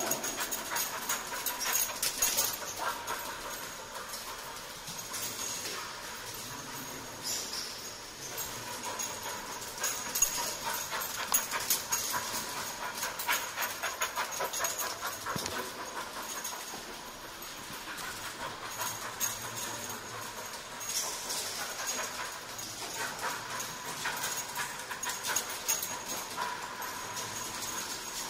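English springer spaniel search dog panting rapidly while it works, a fast, uneven run of short breaths.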